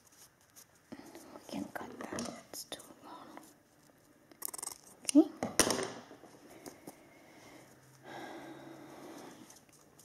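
Hands rubbing and pressing athletic tape wrapped on a dog's ear, an irregular crackly rustling for a few seconds. About five seconds in there is a short, louder rasping sound.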